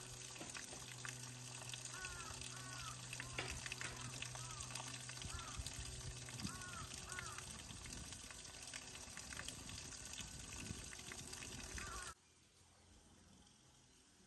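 A thin trickle of water falling over a mossy rock, a steady splashing, with crows cawing again and again, often twice in a row. The sound stops abruptly about twelve seconds in.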